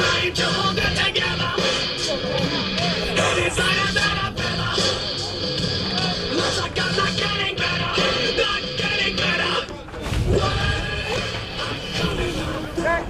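Rock walk-up song playing over the ballpark's loudspeakers as the batter comes to the plate, cutting off about ten seconds in. Wind rumble on the microphone follows.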